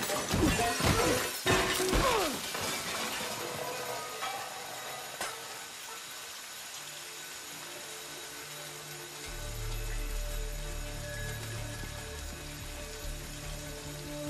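A fast run of glass shattering and crashing impacts fills the first two seconds and dies away, leaving a steady hiss of spraying water. Music comes in, with a deep bass from about nine seconds in.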